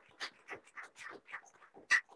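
Applause trailing off into scattered hand claps, about four a second and fading, with one sharper clap near the end.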